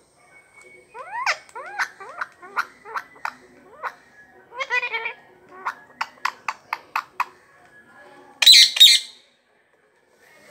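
Male rose-ringed (Indian ringneck) parakeet calling: a string of rising chirps, then scattered short calls and a quick run of about seven sharp calls, ending with a loud harsh screech near the end.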